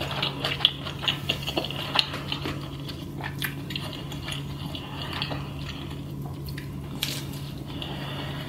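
Close-miked chewing of pizza, with wet mouth clicks and smacks crowded into the first two seconds, then sparser. A steady low hum sits underneath.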